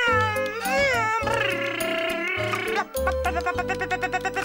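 Pingu's high, gliding gibberish voice (Penguinese) over cheerful background music with a bass line; a quick, regular run of ticks starts near the end.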